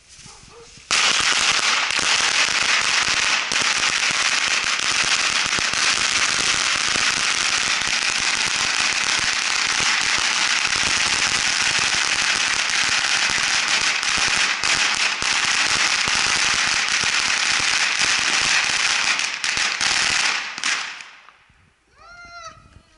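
A long string of firecrackers going off: a rapid, unbroken crackle of small bangs. It starts suddenly about a second in, runs for nearly twenty seconds, then thins out and stops shortly before the end.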